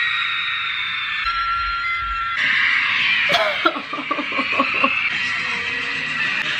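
Concert livestream audio playing through a phone's small speaker: a thin wash of crowd screaming and music. About three seconds in, a woman laughs in a quick run of short bursts.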